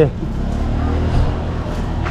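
A motor vehicle engine running steadily at low revs, a low even hum.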